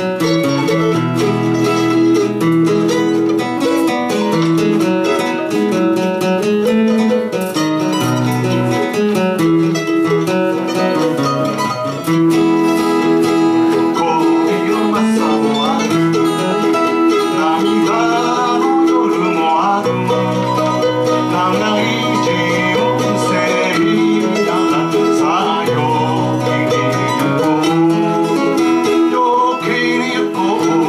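Live folk song: a steel-string acoustic guitar strummed together with a mandolin, with men singing over the chords for much of the time.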